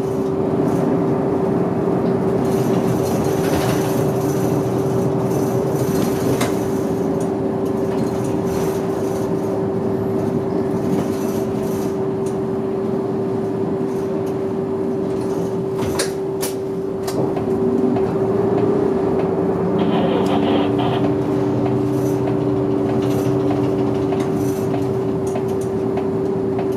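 Kintetsu route bus running through city streets, heard from inside the cabin at the front: engine and road noise with a steady whine throughout. A few sharp clicks come past the middle, and the engine note eases briefly and then picks up again, joined by a second, lower drone.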